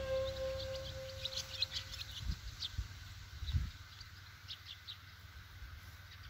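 Background music fading out over the first two seconds, giving way to outdoor ambience of birds chirping with scattered short calls. A few soft low thumps come about two to four seconds in.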